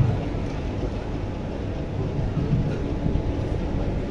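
Steady low rumble of a large, crowded event hall, with no clear voice standing out.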